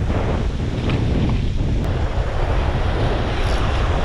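Wind buffeting the microphone over the steady wash of breaking surf.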